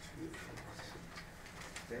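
Faint scattered clicks, about one every half second, over a steady low room hum.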